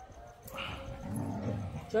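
A pet dog vocalizing low for about a second, followed by a man's short spoken command.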